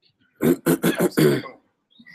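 A person coughing: a quick run of several coughs starting about half a second in and lasting about a second.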